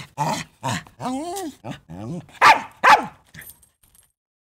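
A puppy yapping and whining: a run of short yaps and rising and falling whines, with the two loudest barks close together about two and a half to three seconds in.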